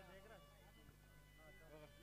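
Near silence: faint background voices and music over a steady low hum.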